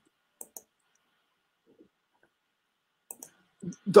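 A mostly quiet pause holding a few short, light clicks: a pair about half a second in and a few more near the end.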